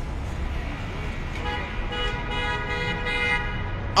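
A vehicle horn sounding one steady note, held for about two and a half seconds from just over a second in, over a low rumble of city traffic.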